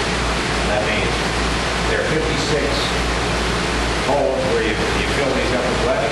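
Men's voices talking, faint and indistinct, over a steady hiss and a low hum.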